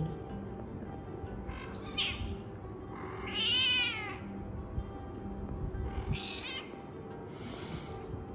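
A cat meowing several times, the loudest a long rising-and-falling meow about halfway through, with faint background music.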